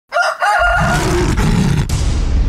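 Title-sting sound effect: a high, wavering crow-like call with a short break in the first second, overlaid from about half a second in by a low rumbling whoosh that carries on.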